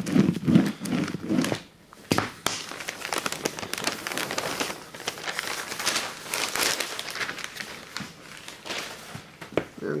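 Newspaper crinkling and rustling in many short crackles as the sheet is rubbed with a hard roller over an inked collagraph plate and handled.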